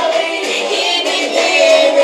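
Children singing a Ukrainian Christmas carol (koliadka) into handheld toy karaoke microphones, their voices thin with no bass, ending on a held note.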